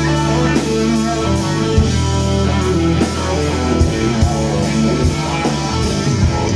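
Live band playing an instrumental passage: electric guitar, bass guitar, drum kit and Hammond organ, with the cymbals keeping a steady beat.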